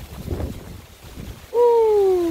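A man's voice giving a long, falling "whooo" hoot, starting about a second and a half in and sliding steadily down in pitch.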